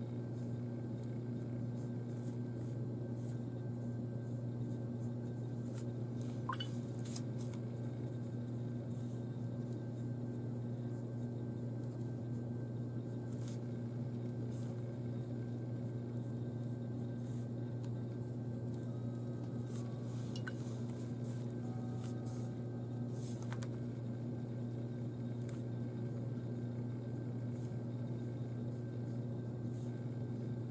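A steady low hum runs throughout, with a few faint, brief clicks and taps.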